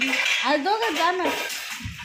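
Dishes and cutlery clinking at a kitchen counter, under a high-pitched voice that talks or sings through the first second or so.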